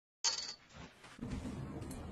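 A short, bright metallic clink about a quarter second in that rings briefly and dies away, followed by quieter, low, muffled handling noise.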